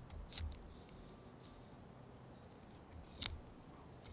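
Faint handling of a plastic bottle while a sticker is picked at and peeled off it, with two short clicks, the sharper one about three seconds in.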